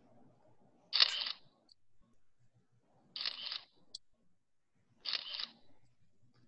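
Three short bursts of clicking noise, about two seconds apart, over a faint background hum.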